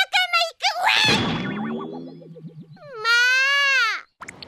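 Cartoon 'boing' spring sound effect about a second in: a sudden twang that falls in pitch and wobbles down into a low buzz as the character bounces on the bed. Near the end a young girl's voice gives a long high-pitched call that drops in pitch as it ends.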